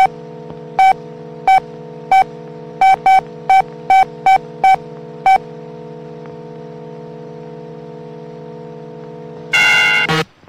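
Electronic console sound effect: a steady hum with about a dozen short beeps at uneven intervals over the first five seconds, as if votes are being registered one by one. Then, near the end, a single louder, harsher tone.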